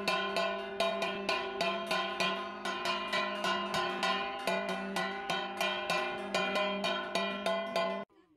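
A metal bell struck in a steady rhythm, about four strokes a second, each stroke ringing on into the next; it cuts off suddenly at the end.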